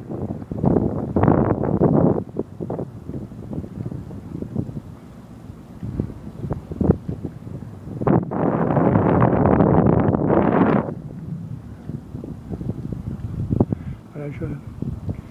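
Wind buffeting the microphone in irregular gusts, with a few short knocks. The longest and loudest gust comes about eight seconds in and lasts about three seconds.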